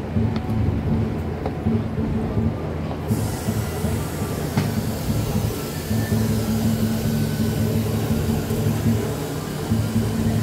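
Steady low rumble of a vehicle, with a rushing hiss coming in about three seconds in and continuing.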